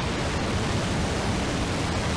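A steady rushing noise with a low rumble under it: a sound effect in a channel's closing logo animation.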